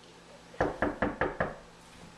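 Five quick, evenly spaced knocks on a panelled interior door.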